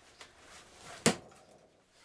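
A single sledgehammer blow on a vintage data transfer switch's box, about halfway through: one sharp crack that dies away quickly.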